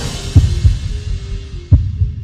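Closing bars of a TV news intro theme: the fuller music fades away, leaving a held low tone with a few deep bass hits, two close together early on and one more near the end.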